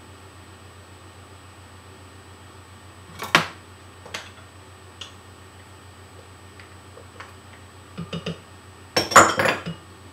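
Small dishes and a spoon knocking and clinking against a glass blender jar as seeds are tipped in: one sharp knock about three seconds in, a few light ticks, and a louder clatter near the end, over a steady low hum.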